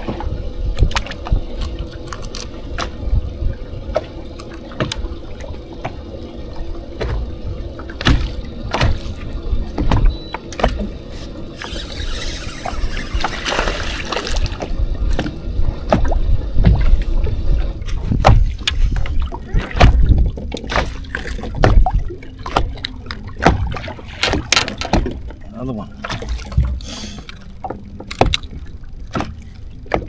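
Water slapping and lapping against a bass boat's hull in choppy water, with irregular knocks and a constant low rumble of wind on the microphone.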